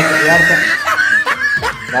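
A man laughing in short, repeated snickers over background music.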